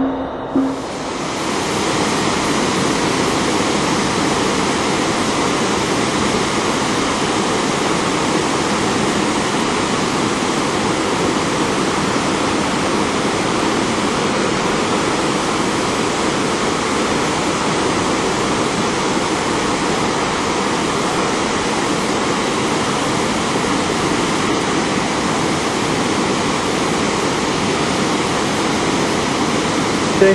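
Water pouring over a low river dam: a steady, even rush that begins about a second in, as a short stretch of music ends.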